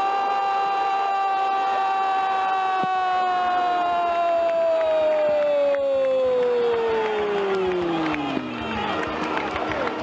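A football commentator's long goal cry, one drawn-out 'gooool' held on a steady pitch, then sliding slowly lower and fading over the last few seconds.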